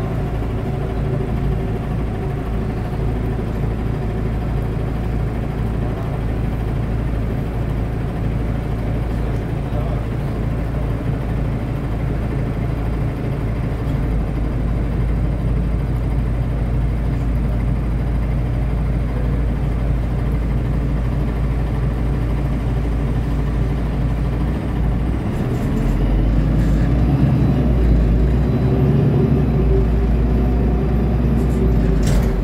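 Cabin noise inside a moving Metronit articulated bus: a steady drivetrain hum with road and rattle noise. Near the end it grows louder and its tone rises as the bus picks up speed.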